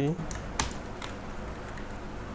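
Computer keyboard typing: a few scattered keystrokes, the sharpest a little over half a second in.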